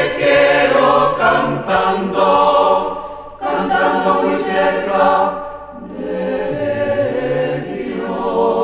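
Polyphonic choir singing held chords in several voice parts, with short breaks about three seconds in and again before six seconds, then a softer passage near the end.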